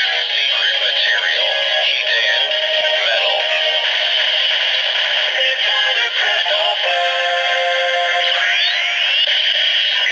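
DX Thousandriver toy belt playing the Metalcluster Hopper transformation sound through its small speaker: a synthesized singing voice announcing 'Metalrise! Secret material! Hiden Metal! Metal Cluster Hopper!' over electronic music, with a rising sweep near the end.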